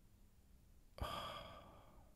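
A man sighs once, a short breathy exhale about a second in that starts suddenly and fades away, while he thinks over a question.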